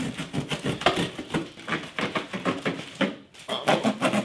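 Plastic wrapping crinkling and cardboard being pulled and torn by hand as a parcel is opened: a dense, irregular run of crackles, with a short lull about three seconds in.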